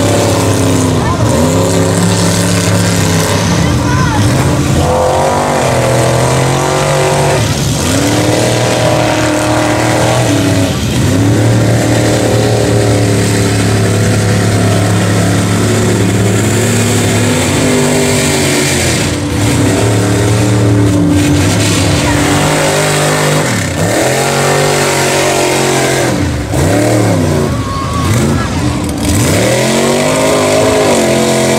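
Mega mud truck with a Chevrolet K5 Blazer body, engine held at full throttle through deep mud. The revs sag again and again as the tires bog down, then climb back up as they break free, with one long stretch held high near the middle.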